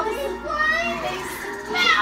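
Children's high, wavering voices calling out, over music playing in the background.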